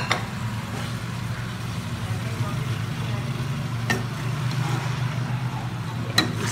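Capsicum and chicken frying in a wok over a high flame, under a steady low hum. A metal spoon clinks against the pan right at the start and again about four seconds in.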